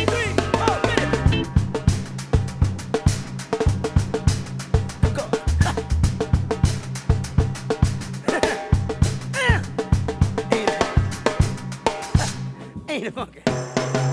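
Drum kit played in a busy funk groove, with rapid snare and bass-drum strokes and cymbal hits over a recorded backing track carrying a bass line and snatches of voice. The drumming thins out briefly near the end.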